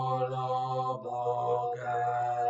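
Slow chanted singing in long, held notes, changing pitch about once a second.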